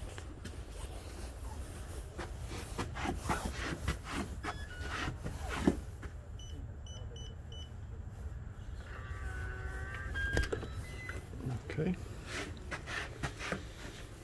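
Yale electronic keypad deadbolt being unlocked: four short high beeps as the code keys are pressed, then a brief motor whir as the bolt retracts, ending in a sharp click. Scattered handling clicks and knocks come before it.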